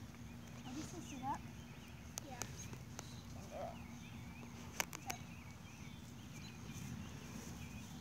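Quiet outdoor background: faint voices, a low rumble from the handheld phone's microphone, and a few sharp clicks, the loudest cluster about five seconds in.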